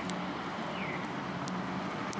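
Steady low background hum, with one short falling chirp from a Eurasian tree sparrow a little under a second in and a couple of sharp clicks.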